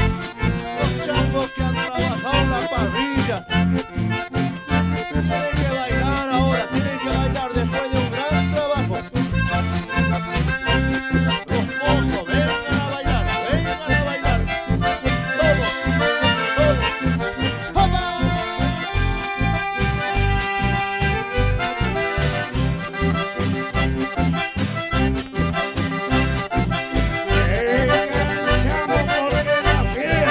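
Live band of diatonic button accordions playing a Latin American folk dance tune in unison, over strummed acoustic guitars and a bass line on a steady beat.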